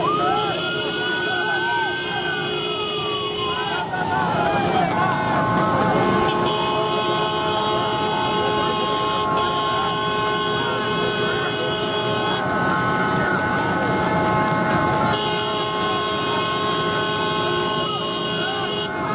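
Vehicle horns sounding continuously, several held tones overlapping, over the running of many motorcycle engines. A siren-like wail rises and then falls in the first few seconds, and voices shout throughout.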